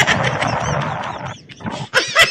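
A person's loud, rough yell lasting over a second, followed by a second short yell near the end.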